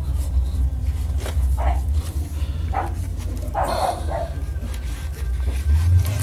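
A dog barks about four times over a steady low rumble.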